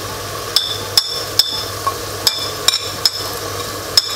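Sharp, ringing clinks in two runs of three as a small ceramic plate is tapped to knock whole spices (cumin seeds) off it into a cooking pot.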